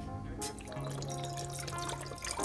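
Background music with steady held notes, over water dripping and pouring into a steel pot.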